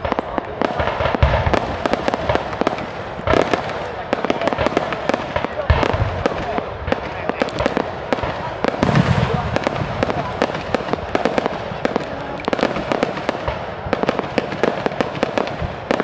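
Strings of firecrackers going off in a rapid, continuous run of sharp bangs, with voices faintly underneath.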